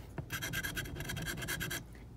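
A scratch-off lottery ticket's coating being scratched away in a quick run of short, even strokes, about ten a second, stopping just before the end.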